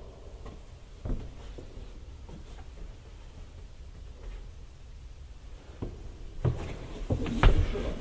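Quiet room tone with a faint knock about a second in, then a run of low thumps and rustles that grows louder near the end.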